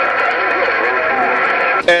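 A President HR2510 ten-meter radio's speaker carrying a received signal: a faint, unclear voice under steady hiss and a steady whistle. A louder, clear voice cuts in near the end.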